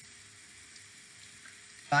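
Faint steady hiss of microphone noise and room tone in a pause between phrases of speech; a man's voice starts again right at the end.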